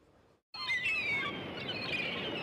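Recorded seagull cries played over the stage sound system as the intro to a song: several overlapping calls falling in pitch, over a soft background hiss. They start suddenly about half a second in.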